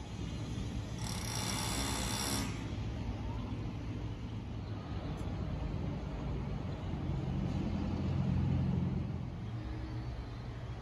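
Outdoor background noise: a steady low rumble like distant traffic or machinery, with a hiss lasting about a second and a half starting about a second in, and the rumble swelling for a couple of seconds near the end.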